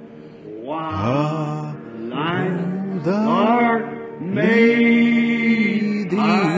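A voice singing a slow hymn tune in long held notes that slide from one pitch to the next.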